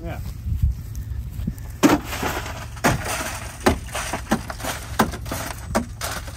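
Shattered glass from a Hyundai SUV's blown-out rear hatch window being knocked out of the frame by hand. From about two seconds in there is a series of irregular sharp cracks with crunching and crumbling between them.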